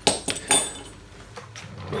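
Steel tools set down on a wooden workbench: two sharp knocks about half a second apart, the second with a brief metallic ring, then light handling noise.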